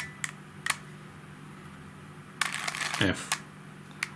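Plastic clicks of a Helicopter Cube puzzle being turned by hand: two single clicks in the first second, then a quick run of clicks about two and a half seconds in as an edge is rotated.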